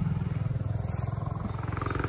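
A motorcycle riding past, its engine a steady low note with a fast, even beat.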